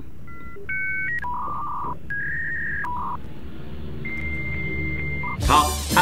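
A sound-effect tune of pure electronic beeps at changing pitches over a soft low backing, ending in one long held beep, used to fill a thinking pause.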